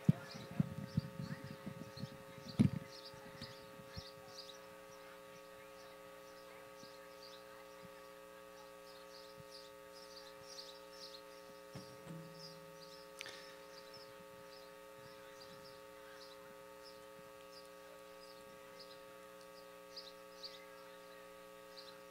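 Low, steady electrical hum from an open sound system, with faint short high chirps repeating throughout. A few knocks sound in the first three seconds, the loudest about two and a half seconds in.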